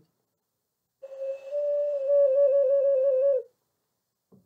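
A small black figurine whistle from Mexico, blown through its tail: one held, flute-like note of about two and a half seconds, steady at first and then warbling quickly in pitch, sounded as an "official cat call".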